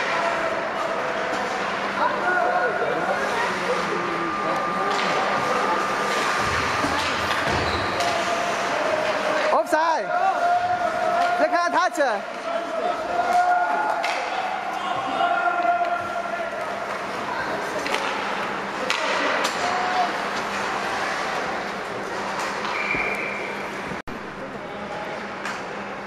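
Ice hockey play in an indoor rink: scattered sharp knocks of sticks and puck and pucks striking the boards, the loudest cluster about ten to twelve seconds in, over a steady hum of spectators' and players' voices.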